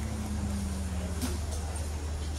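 Steady low engine drone. A second engine note slides down in pitch over the first second or so and then fades.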